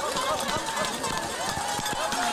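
Spectators shouting and cheering as a biathlete skis past, many voices overlapping, with sharp clicks scattered through.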